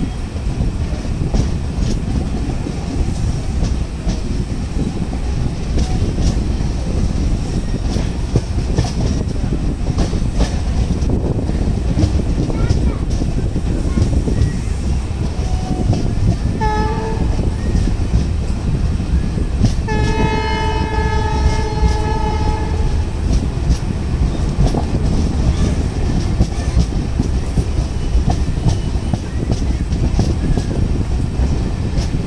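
Passenger train running on the rails, heard from an open coach door, with a steady rumble and wheel clatter as it pulls away. The WDP4D diesel locomotive's horn gives a short toot just past the middle, then a longer blast of about three seconds.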